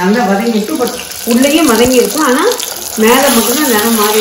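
Mostly a woman's voice talking, with short breaks about a second in and near three seconds, over a steady hiss of small white onions frying in oil in a pot.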